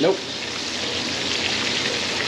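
Pork chops frying in hot canola oil: a steady sizzle.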